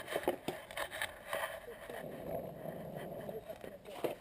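Longboard wheels rolling on asphalt, a steady rumble, with a few short clicks and knocks in the first second.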